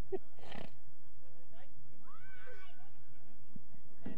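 A young child's wordless high-pitched cry, rising and then held briefly, about two seconds in, over steady outdoor background noise. It follows the tail end of a laugh.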